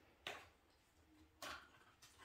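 Near silence: room tone, broken by two faint brief rustling noises about a second apart.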